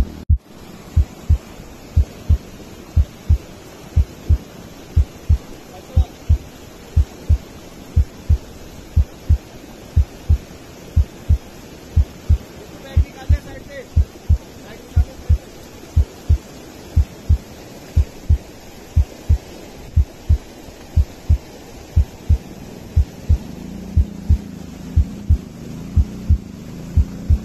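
A heartbeat sound effect: strong, evenly repeated low double thumps keeping a steady beat, over the steady rush of a stream.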